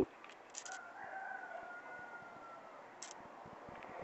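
A faint, distant animal call held for about two seconds, falling slightly in pitch, with a few soft clicks around it.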